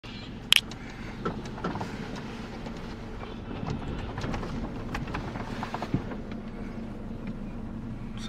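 Engine and road noise inside the cabin of a slowly moving car, with a sharp click about half a second in and a few lighter knocks.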